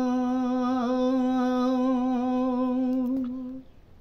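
An elderly man's voice holds one long, steady sung note at the close of a line of a Gojri bait, a chanted folk verse. The note stops about three and a half seconds in.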